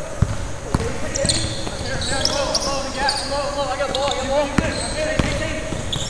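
Basketball players in a live drill on a hardwood gym floor: sneakers squeaking in short high-pitched chirps, a few sharp knocks from the ball, and players calling out faintly.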